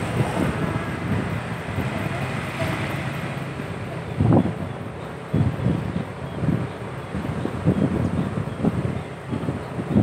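Wind buffeting the microphone on a moving motorcycle, in irregular gusts, with the motorcycle and road noise running underneath.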